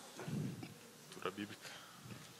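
Faint, indistinct voices off the microphone in a quiet lull, with a brief faint sound about a second in.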